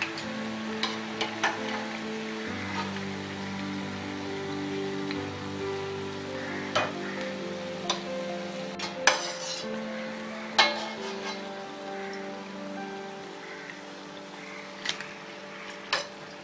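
Rice-batter bondas deep-frying in hot oil, a steady sizzle, with a few sharp clinks of a steel slotted spoon against the pan. Soft background music with long held notes plays over it.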